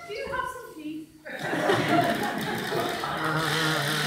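A single voice speaking, then a sudden swell of audience laughter and chatter about a second and a half in that carries on.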